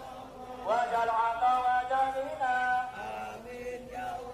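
A man's voice chanting in long, held melodic notes, heard through a loudspeaker.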